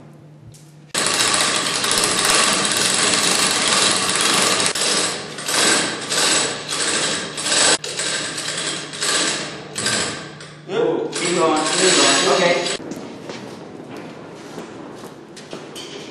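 Loud rushing, rattling machine noise that starts suddenly about a second in and surges and dips, then drops to a lower rush about thirteen seconds in.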